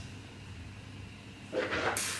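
A taster's mouth slurping red wine: after a faint low hum, a short hissy rush near the end as air is drawn through the wine in the mouth to aerate it.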